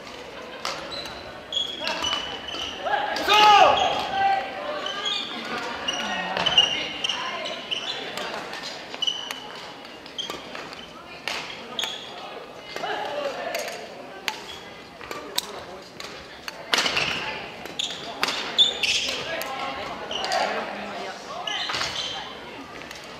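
Badminton rallies in a reverberant gym: sharp cracks of rackets hitting the shuttlecock and squeaks and thuds of court shoes, with players' shouts and calls, the loudest shout a few seconds in.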